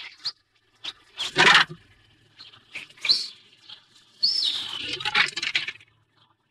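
Birds chirping in short scattered calls, with louder rustling bursts about a second and a half in and again for over a second near the end.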